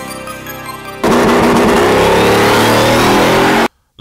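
Music for about the first second, then a donk car's engine accelerating hard, very loud, its pitch rising steadily, cut off abruptly just before the end.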